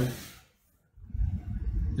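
A brief gap of near silence, then low background noise starting about a second in.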